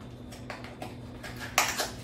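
Handling noise from a small cardboard box of powdered clay turned in the hands: a few light taps, then a brief louder rustle near the end.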